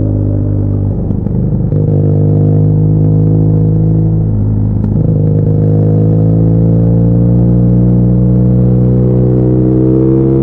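BMW R nineT's air/oil-cooled boxer twin, running with its airbox removed, aftermarket headers and the exhaust flapper valve deleted, heard from the rider's seat under way. Its note breaks briefly for a gear change about a second in and again about halfway through, then rises steadily as the bike accelerates.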